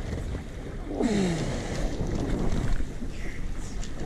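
Wind buffeting the microphone over the steady rush of seawater along a moving boat's hull, louder from about a second in.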